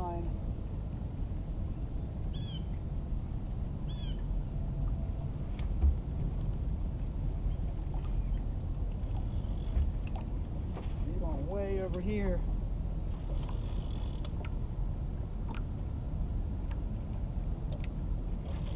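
Steady low rumble of wind and water around a small open fishing boat, with a few faint clicks and a couple of short high chirps.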